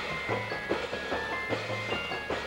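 High school marching band playing: held high notes over regular drum strokes, with a low note that pulses about every second and a half.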